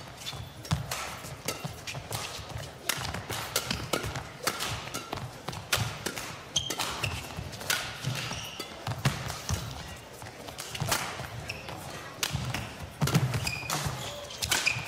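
Badminton rally: sharp racket strikes on the shuttlecock repeating every second or so, with players' shoes squeaking and thudding on the court mat as they lunge.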